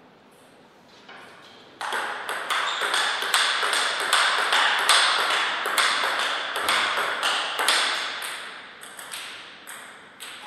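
Table tennis ball hit back and forth in a long rally: sharp alternating clicks of ball on paddle and bounces on the table, about three a second. The rally starts about two seconds in and dies away near the end, each click with a short echo.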